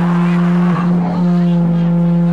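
A loud, steady low drone from a band's amplified instrument holding one note, dipping briefly about a second in. Crowd voices shout over it.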